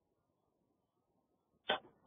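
Near silence, broken by one brief, sharp sound near the end.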